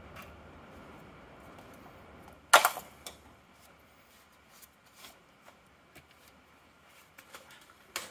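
Faint, scattered light clicks and clinks of small objects being handled, over a low steady hum.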